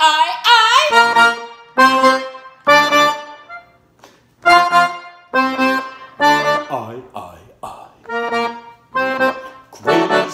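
Piano accordion playing a steady run of short, punchy chords, about one a second, each dying away quickly. A man's sung note with a wavering vibrato ends the first moment.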